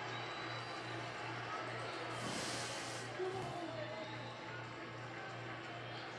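Television audio from a college baseball broadcast heard through the TV's speakers: music with a steady low pulse over ballpark crowd noise, and a brief hiss about two seconds in.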